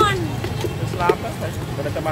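Voices over a steady low rumble of street background noise. A voice trails off at the start and another short voice comes about a second in.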